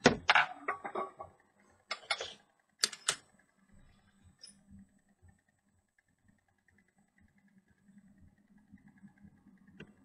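Several sharp clicks and knocks in the first three seconds as small objects, a coil among them, are handled and set down on a bench mat. After that only a faint steady buzz and a few light ticks remain.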